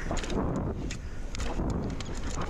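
Mountain bike rolling down a dirt trail: tyres crunching over loose dirt and the bike clattering over small bumps, over a low rumble.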